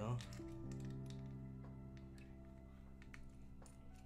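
Soft background music of steady, held notes, with a few faint small clicks from a screwdriver working a screw in a model locomotive's metal chassis.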